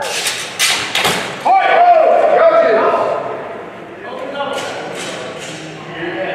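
Steel longswords striking in a fast exchange: several sharp impacts in quick succession in the first second, then a loud drawn-out "woo" shout. A few more sharp knocks follow about four and a half to five seconds in.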